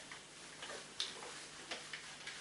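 Whiteboard being wiped with a handheld duster: irregular short rubbing strokes against the board, about three a second.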